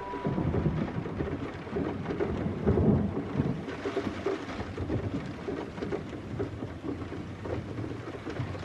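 A storm on the soundtrack: rain with a deep rolling rumble of thunder that swells to its loudest about three seconds in.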